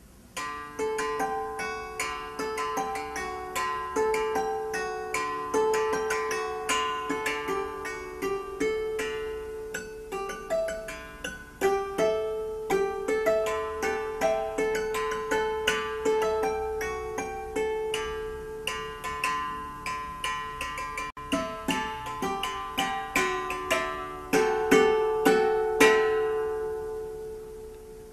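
Four-string Pythagorean harp (kanon) played by plucking, in a short improvised piece on strings tuned to Pythagorean intervals: octaves and a fifth, D to A. Notes come a few to the second and each rings on and decays over one held note. The last notes die away near the end.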